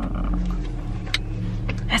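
Car engine idling, a steady low hum heard from inside the cabin, with a few light clicks in the second half.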